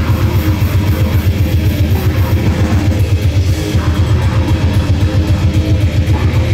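Grindcore band playing live: distorted electric guitar and bass over fast, driving drumming, with the loudness pulsing about five or six times a second.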